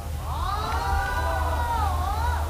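Several young men's voices calling out one long, drawn-out 'saranghamnida' ('love you') together in Korean, sliding down in pitch at the end.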